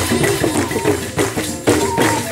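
Choir singing together to hand percussion with a jingling, tambourine-like sound keeping a steady beat of about three strokes a second.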